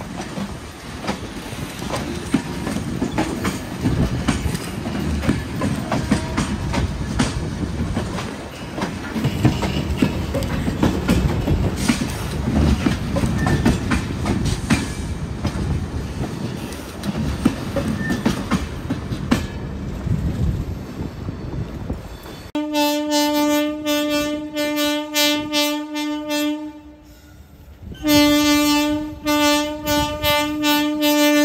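Passenger coaches of the Deccan Queen rolling past close by, their wheels clicking over rail joints. Near the end this gives way to a WCAM-3 electric locomotive's horn, sounded in a long blast, then, after a short break, a second blast.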